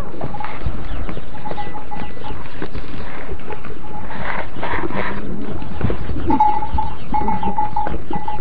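Week-old goat kids bleating, short high calls repeated several times and louder near the end, over rustling straw and knocks close to the microphone.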